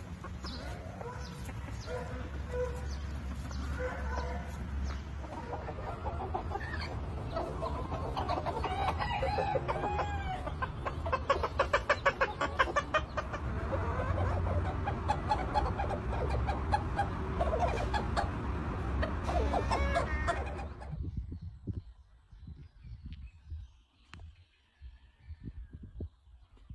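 Cochin bantam chickens clucking and calling, with a rooster crowing. A quick run of repeated calls about halfway through is the loudest part. Near the end it drops to a few quiet scattered clucks.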